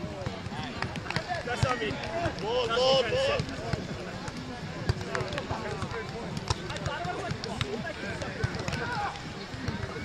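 Indistinct talking and calls from several people, with one louder call about three seconds in, and a few sharp knocks scattered through.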